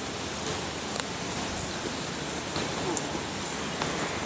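Steady outdoor background hiss, with a couple of faint clicks about a second in and near the end.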